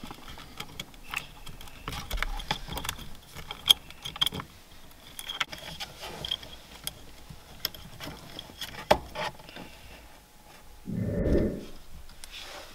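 Scattered light clicks, taps and scrapes as a short steering-wheel hub is handled and slid over the steering column splines, with wiring tucked inside it. A brief low sound near the end is the loudest moment.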